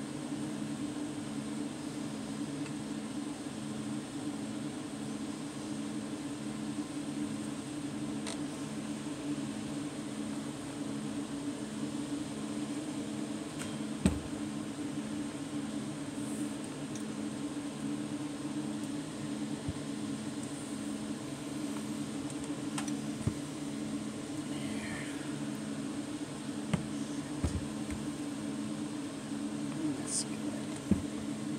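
Steady mechanical hum from a running motor, with a slow regular pulse in it. A few light knocks from handling break in, the sharpest about fourteen seconds in.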